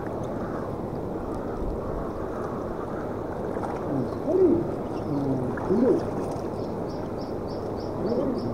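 Steady rush of rippling water and breeze at the water's edge, with several short wavering low-pitched calls from about four seconds in.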